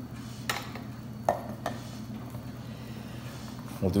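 Three light clinks of a metal measuring cup against a glass bowl in the first two seconds, over a low steady hum.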